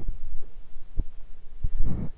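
A low hum with three soft, short low thumps: one at the start, one about a second in and one shortly after, then a faint breath near the end.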